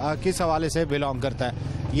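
Men's voices talking over one another in a crowd, with a steady low hum beneath.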